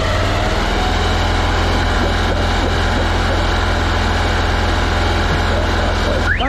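Vanguard gasoline engine of a van-mounted high-pressure sewer jetter, freshly started and running at a steady, even speed.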